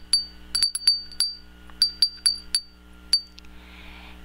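Japanese glass wind chime (furin), its clapper striking the bell in quick irregular clusters, each strike a brief, bright, high ring. The strikes stop a little after three seconds in.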